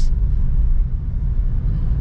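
Steady low rumble of road and engine noise inside a Suzuki Ertiga's cabin while it drives over a broken, unpaved road surface.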